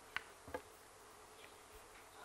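Quiet room tone in a hall, with two faint, brief clicks in the first half-second, the first the sharper.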